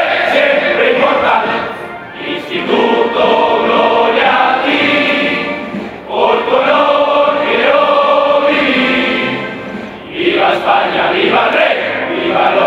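A large group of voices singing a slow hymn together in long held phrases, with a short break between phrases about every four seconds.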